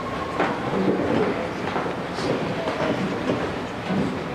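Steady rumble and shuffling of a large congregation in a reverberant church, with a few sharp knocks, the clearest about half a second in.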